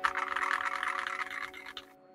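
Fast typing on a Keydous NJ68CP Hall Effect magnetic keyboard with a brass plate: a dense run of keystrokes that tails off near the end. The sound is a little clacky and could use more depth.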